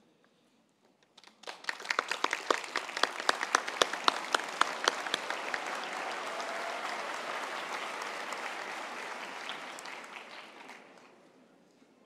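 A crowd applauding. It starts about a second in with sharp, distinct handclaps, swells into a dense, even wash of clapping, and dies away near the end.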